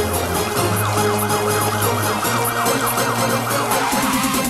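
Early-1990s Polish techno-dance track: a siren-like wail rising and falling rapidly, about four times a second, over a steady beat and bass line.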